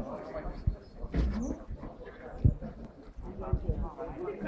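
Indistinct voices of people talking, broken by a few short, dull low knocks.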